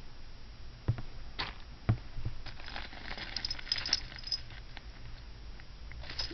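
Metal bracelets being handled: a few sharp clicks in the first two seconds, then a stretch of light metallic clinking and jingling.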